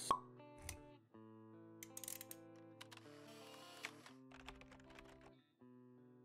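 Faint logo-intro music of soft held notes, opening with a short pop and dotted with a few light clicks.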